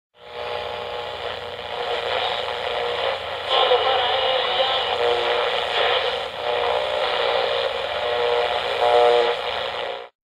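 Radio-station intro sound with a thin, radio-speaker quality: a steady noisy wash with a few held tones, ending abruptly.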